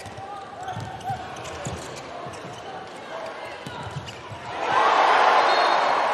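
A handball bouncing on an indoor court floor during play over low arena crowd noise; about four and a half seconds in, the crowd suddenly rises into loud cheering.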